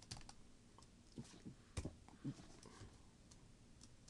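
Faint, scattered clicks from a computer mouse and keyboard, about half a dozen short taps spread irregularly over a few seconds.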